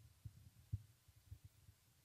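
Near silence broken by a string of faint, irregular low thumps and bumps, the loudest about three quarters of a second in.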